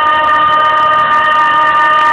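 A woman singer holding one long, high, belted note through a microphone, perfectly steady in pitch.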